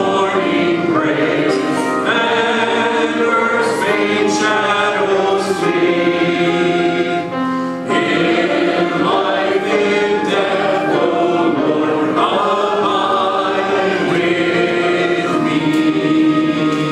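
A congregation singing a hymn together, phrase after phrase with short breaks between lines.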